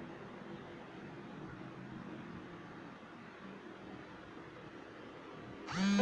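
Steady faint room hiss with a low hum while nothing is played; near the very end, backing music starts abruptly and loudly with sustained pitched notes.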